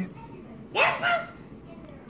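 A single short, bark-like call that rises in pitch, about a second in.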